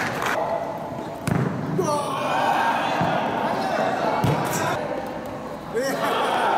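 A football thudding a few times as it is kicked and bounces on an indoor court floor, under continuous children's voices shouting in an echoing hall.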